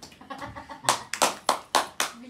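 Hands clapping: a quick run of about five claps, roughly four a second, in the second half, after a few lighter ones.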